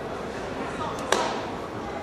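A single sharp slap about halfway through, echoing in a large hall: a changquan (long-fist wushu) performer striking hand against body or foot during the form, over a steady murmur of voices in the arena.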